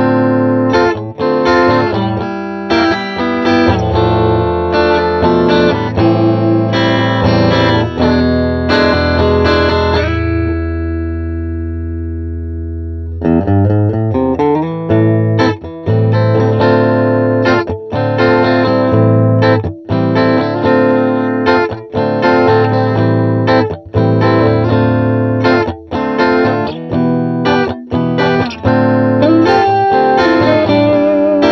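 Ibanez GIO electric guitar with twin humbucking pickups being played: rhythmic picked chords and riffs with short choppy stops. About ten seconds in, a chord is left ringing and fading for about three seconds before the playing starts again.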